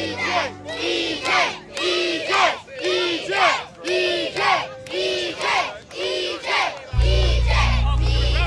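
A crowd of children shouting a chant in unison, about two shouts a second, over faint background music. About seven seconds in, a loud, deep bass music track comes in.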